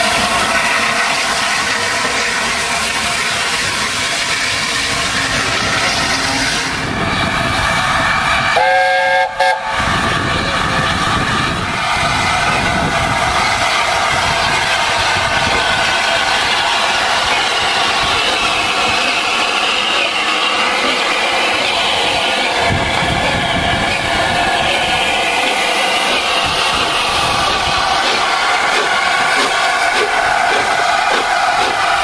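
Steam locomotives running past at close range, with continuous exhaust and the noise of wheels on the rails. First comes the A1 Pacific 60163 Tornado. After a cut about nine seconds in comes the LNER A4 Pacific 60007 Sir Nigel Gresley. A short, multi-note whistle sounds right at the cut.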